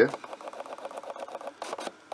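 A camera lens motor whirring with a rapid, even ticking as the lens adjusts. The ticking stops near the end.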